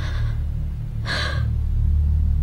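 A crying woman's two sharp, breathy sobbing gasps, one at the start and one about a second later, over low background music.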